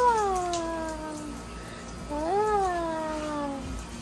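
A wet dog whining in two long drawn-out cries, each rising briefly and then sliding down in pitch, with a pause of about a second between them.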